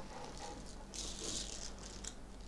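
Cowrie shells rattling and clattering together as they are shaken in the hands for a divination cast, with the busiest burst of rattling about a second in.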